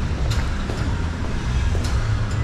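Low rumbling background noise of a concrete parking garage, with two sharp footstep clicks on the concrete floor about a second and a half apart.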